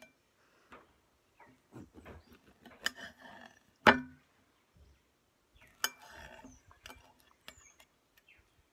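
Serrated knife cutting through a ripe papaya, with irregular clicks and knocks as the blade and fruit meet the plate or board beneath, and soft rasping as the blade saws through the flesh. The loudest knock comes a little under four seconds in.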